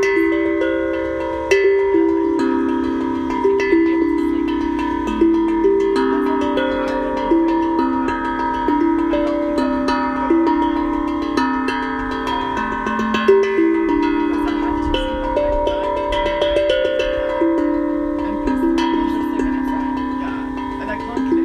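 Steel tongue drum played in an improvised melody: single notes struck about one or two a second, each ringing on into the next as the tune steps up and down.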